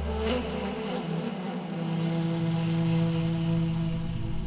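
Drama background score: a low sustained drone of held notes that swells slightly as it goes on, with a deep rumble underneath that fades out about a second in.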